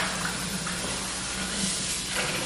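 Tap water running steadily into a sink.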